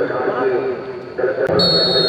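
A short, shrill referee's whistle blast near the end, signalling the free kick to be taken, over a man's commentary.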